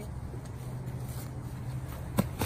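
Steady low outdoor rumble with a faint hiss above it, and no distinct events.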